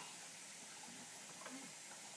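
Near silence: quiet room tone with a faint hiss and one brief faint sound about one and a half seconds in.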